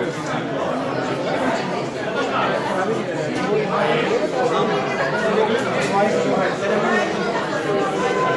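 Steady chatter of many people talking at once, no single voice standing out.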